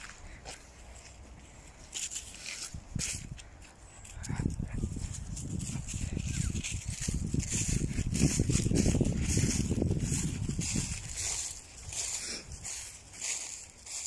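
Footsteps crunching and rustling through dry fallen leaves, a dense run of crackling that starts about four seconds in and fades out a couple of seconds before the end.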